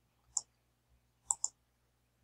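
Computer mouse button clicks: a single click, then two quick clicks in close succession about a second later, a double-click.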